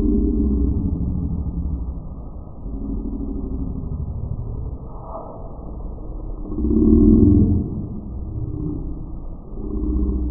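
Quadcopter's four brushless motors spinning their propellers in a run-up test, the sound rising and falling in surges, loudest about seven seconds in.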